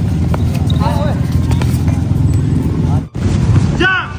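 Short shouted calls from futsal players over a loud, steady low rumble. The sound drops out briefly about three seconds in.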